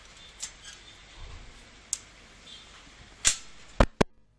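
Four sharp clicks or taps over faint room noise, the two loudest close together near the end.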